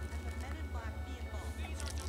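Background music with a fast, even low bass pulse and faint vocals.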